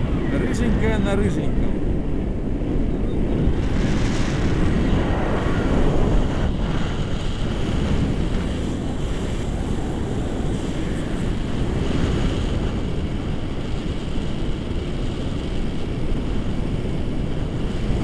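Wind rushing over the microphone of a camera carried by a paraglider in flight: a steady, low buffeting noise.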